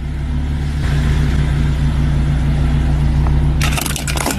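A Porsche's engine running with a steady low hum as the car rolls over a smashed Xbox Series X. Near the end, the console's plastic casing and parts crack and crunch under the tyre.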